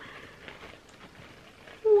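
Faint rustling of tissue paper being unwrapped by hand, then a woman exclaims "Wow!" near the end.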